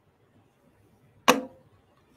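A single sharp knock about a second and a quarter in, dying away quickly.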